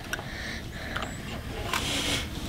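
Small clicks and crunches of an Oreo cookie being bitten and chewed, with a louder crunch near the end.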